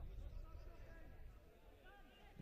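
Faint football stadium ambience: a low rumble with distant, indistinct voices from the crowd and pitch.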